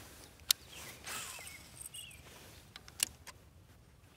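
Two sharp clicks about two and a half seconds apart, with a few lighter ticks after the second, from a Shimano Calcutta 50B baitcasting reel being worked during a cast and retrieve.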